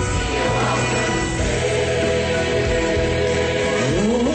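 Church choir singing with instrumental accompaniment, holding long sustained notes in the second half.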